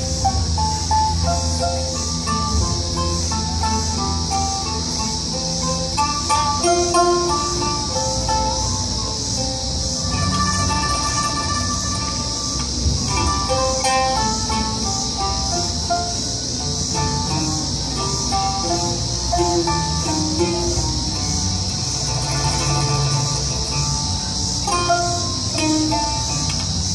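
Oud and pipa played together live, a run of short plucked notes, over a steady high cicada drone that fills the background.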